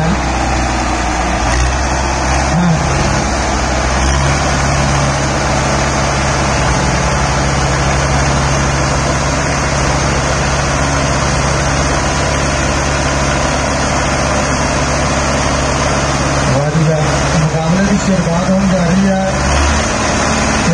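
Tractor engines labouring under heavy load as two tractors pull against each other in a tug-of-war. It is a loud, steady low drone that gets louder about four seconds in, with voices shouting over it near the end.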